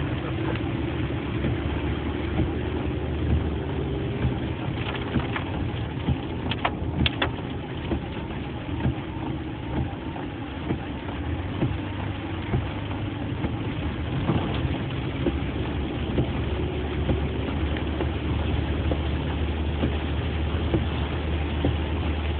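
Car engine running with steady road noise heard from inside the cabin as the car drives along a rain-soaked, flooded street, with a few sharp knocks about six to seven seconds in.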